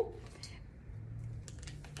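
Faint rustling of clothing fabric and a few light clicks of a hanger as garments are handled, over a low steady room hum.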